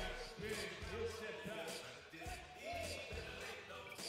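A basketball being dribbled on the court, repeated bounces, under background arena music and voices.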